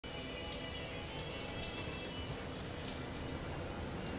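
Steady low hiss of film soundtrack ambience, with faint held high tones that fade out about halfway through.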